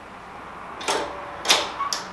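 Two short clicks or knocks about half a second apart, then a fainter tick, over a faint low hum.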